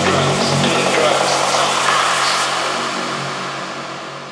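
Techno track in a DJ mix going into a breakdown: the steady low bass pulse stops about half a second in. It leaves a dense noisy synth wash that fades toward the end.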